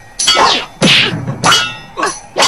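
Three added fight sound effects of blows landing, about two-thirds of a second apart, each a sharp hit that falls in pitch.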